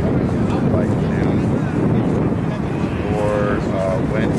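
Wind buffeting an outdoor microphone with a steady low rumble, under distant shouts from rugby players and spectators, with one held call about three seconds in.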